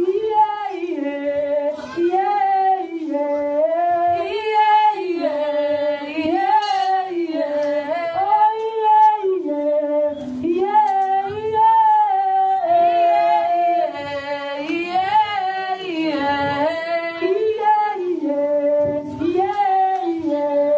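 A woman singing a worship song into a microphone, a melody in short phrases that rise and fall and repeat.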